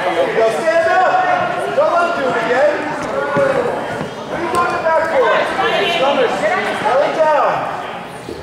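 Mostly speech: raised voices calling out in a gymnasium, with no clear words.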